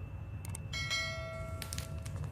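Bell-chime sound effect of a subscribe-and-notification-bell animation: a short mouse-click sound, then a bright bell ding starting under a second in that rings for about a second.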